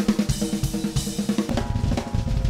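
A drum kit played fast, with dense snare and tom strokes over cymbals and hi-hat. The bass drum comes in heavier about a second and a half in.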